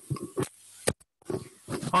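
Indistinct voices in the room, with a single sharp click a little under a second in and a brief cut-out of all sound just after it, before the voices pick up again.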